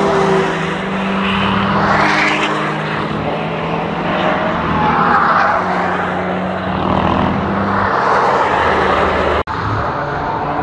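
Several cars' engines running hard as they drive past on a race track one after another, their sounds overlapping. The sound drops out suddenly for an instant about nine and a half seconds in.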